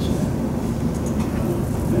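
Steady low rumble of room background noise, like an air-handling system, with no clear events.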